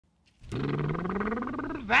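The opening of a sung song: a long, slowly rising note with a rough, buzzing edge. The sung lyrics begin near the end.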